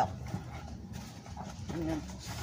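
Oak leaves being tipped from a plastic nursery pot into a cardboard box: faint, irregular rustling with light knocks and scrapes from the pot.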